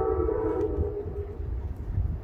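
Distant horn of the approaching Amtrak P42 locomotive #124: a chord of several steady tones held for about a second and a half, then cut off, over a low steady rumble.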